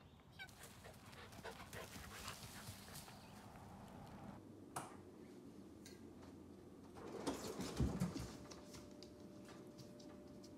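Faint sounds of a bernedoodle puppy stirring on a hardwood floor. About seven seconds in there is a louder scuffle with a couple of low thumps as it gets up.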